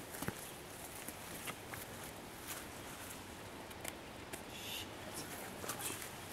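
Footsteps through grass and leaf litter, with scattered faint rustles and small clicks over a quiet outdoor background.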